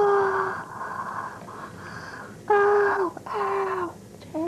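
A young person's voice giving three drawn-out wailing cries, each held on one pitch and sagging at the end; the first comes at once, the other two close together about two and a half seconds in.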